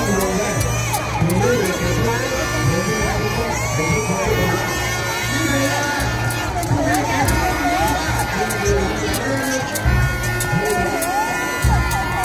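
A large crowd of spectators shouting and cheering, with music playing underneath.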